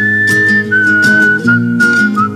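Instrumental song intro: a high whistled melody holds a note, then steps down slowly, over strummed acoustic guitar chords.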